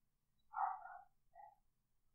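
A short animal call, about half a second long, a little after the start, followed by a shorter, fainter one, against near silence.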